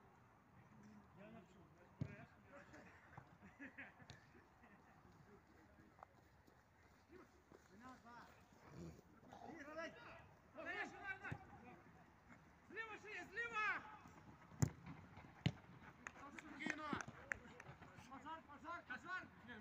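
Distant shouts of footballers calling to each other across the pitch, coming in short bursts, with a few sharp knocks of the ball being kicked, the loudest about two-thirds of the way in.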